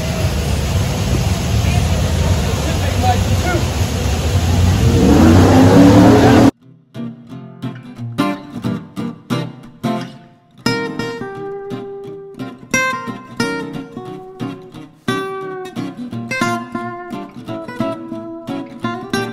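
Outdoor background noise, then an abrupt cut about six seconds in to acoustic guitar music played as single plucked notes that ring and fade.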